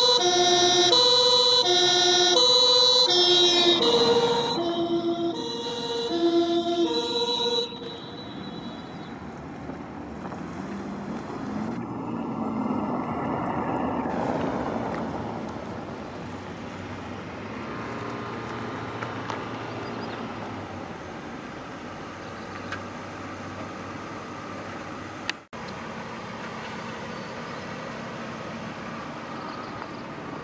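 Hella four-horn two-tone siren of a 2003 BMW 525d E39 police car sounding the German two-tone call, alternating two pitches each about half a second. The pitch drops about four seconds in, and the siren cuts off after about eight seconds, leaving the much quieter sound of the car moving.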